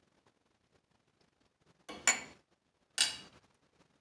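A metal spoon clinking against a small glass sauce bowl, two short sharp clinks with a brief ring about two and three seconds in.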